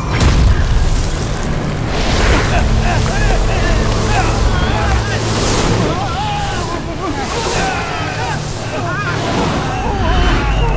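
Loud layered battle sound effects: a continuous rushing, wind-like roar over a low rumble, broken by several short whooshes or hits, with wavering voice-like cries over the top.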